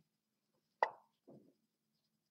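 Lichess move sound: a single sharp click that dies away quickly, a little under a second in, marking the opponent's move as it lands on the board. A softer, lower sound follows about half a second later.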